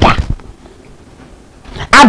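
A woman's speech breaks off into a short breathy sound, then a pause of about a second and a half with only low background hiss, before her talking starts again near the end.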